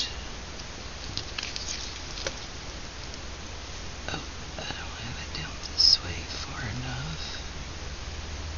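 A paper craft tag handled on a table: soft rustles and light taps, with faint muttering under the breath partway through and a short hiss about six seconds in.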